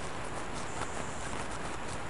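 Soft, steady rustling and scraping of a gloved hand sifting through loose dirt close to the microphone, with a few faint ticks.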